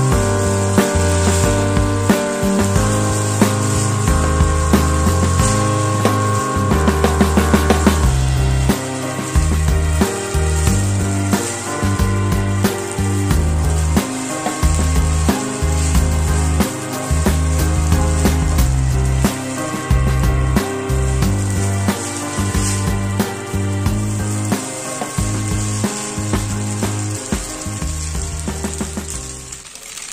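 Background music with a steady beat over the sizzle of spaghetti and vegetables frying in a pan, with the scrape and tap of a plastic spatula stirring.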